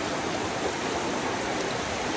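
Rocky rainforest river rushing over rapids: a steady, even rush of water.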